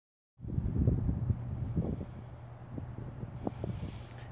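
Low wind rumble on the microphone, starting about half a second in, with a few faint knocks.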